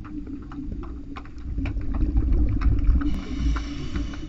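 Underwater sound picked up by a diving camera in its housing: a low rumble of moving water with scattered sharp clicks and crackles. About three seconds in comes a brief hiss of a diver breathing in through a scuba regulator.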